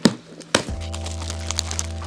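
Two sharp cracks about half a second apart as a cardboard box is cut and opened, followed by steady background music.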